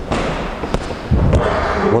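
A boxer's step forward on wooden floorboards and a gloved punch into an open palm: a scuff, then a heavy thud a little past a second in.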